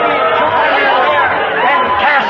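A congregation praying aloud all at once: many overlapping voices in a steady babble.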